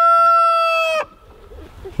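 Rooster crowing: the long, drawn-out last note of a crow, held at one pitch and cutting off about a second in.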